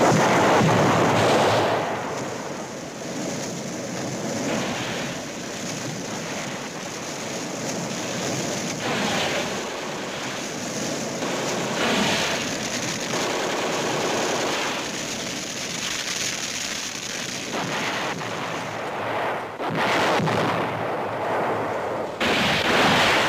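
Battle sound effects on an old film soundtrack: a flamethrower's loud rushing burst in the first two seconds, then a continuous noisy din of flames, gunfire and blasts, with surges every few seconds.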